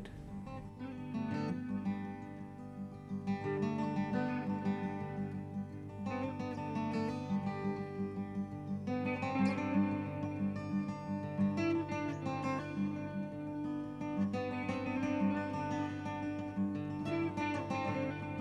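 Background music played on acoustic guitar, a steady run of plucked notes and chords.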